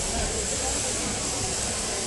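Steady, even hiss-like running noise of a sheep-shearing competition hall, with the electric shearing handpieces running on the shearing stands and no distinct knocks or calls.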